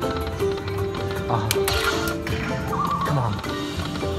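Lightning Link slot machine playing its hold-and-spin bonus music and reel-spin sound effects during a free spin that lands no new fireball, with a short warbling tone about three seconds in.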